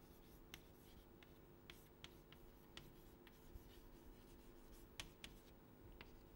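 Chalk writing on a blackboard: faint, scattered taps and short scratches as a word is written, the sharpest pair about five seconds in, over a low steady room hum.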